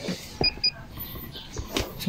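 Handheld motorcycle diagnostic scanner giving two short electronic beeps in quick succession about half a second in, followed by a couple of clicks as it is handled.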